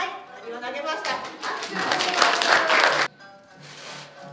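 Voices and clapping over background music, which stop abruptly about three seconds in, leaving the music alone.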